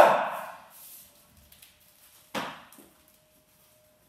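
Martial artist performing a kata: a very loud, sharp strike or stamp at the start that rings on in the hall for most of a second, then a softer second strike about two and a half seconds in.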